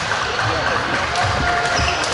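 Badminton hall during play: a steady background of many voices, with repeated sharp racket hits on shuttlecocks and thudding footfalls on the court floor.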